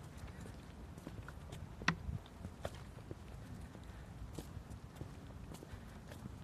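Faint outdoor background rumble picked up by a hand-held phone's microphone, with scattered light taps and clicks, one sharper click about two seconds in.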